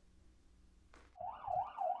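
Siren of a Korean 119 rescue/ambulance vehicle, a wailing tone that rises and falls rapidly. It starts about a second in, after near silence.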